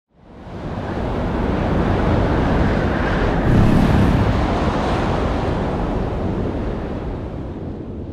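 Sound-designed rushing noise for a production company's logo ident, like a deep gust of wind: it swells up from silence, peaks about halfway through and then slowly dies away.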